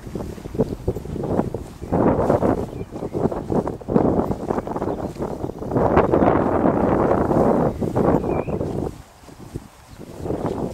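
Wind buffeting the microphone in gusts, with a long strong gust past the middle that drops away suddenly near the end, and scattered short knocks through it.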